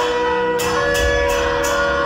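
A group of male voices chanting a Hindu devotional hymn in unison, held notes shifting pitch, with a small brass percussion instrument struck in a steady rhythm about twice a second.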